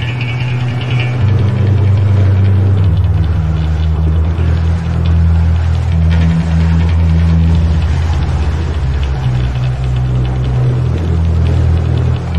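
Black metal music: heavy, dense band sound with sustained low notes that shift in pitch every second or two.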